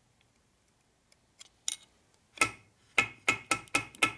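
About six sharp, ringing metal-on-metal taps in the second half, coming quicker near the end, as a steel rod is worked down the countershaft bore of a Harley-Davidson four-speed transmission case. The shaft is knocking against a thrust washer that is still overhanging and blocking it.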